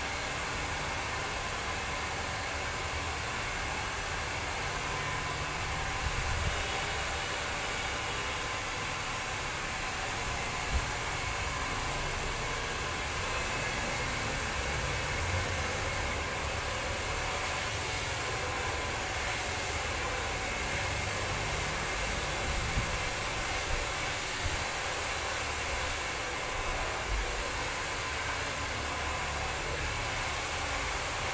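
Handheld hair dryer blowing steadily, a constant rushing noise with a faint whine, broken only by a few small knocks.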